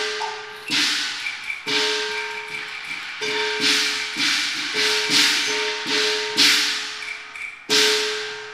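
Cantonese opera percussion interlude: cymbal crashes and gong strikes in an irregular rhythm, about one to two a second, each left to ring on.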